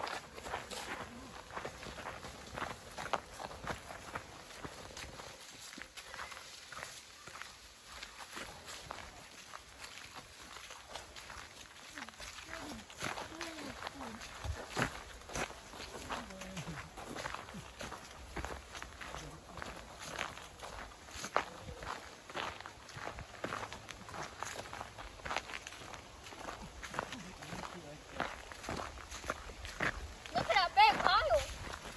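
Footsteps of several people walking on a trail covered in fallen leaves, with a rapid run of short rustles and crackles from the leaves underfoot.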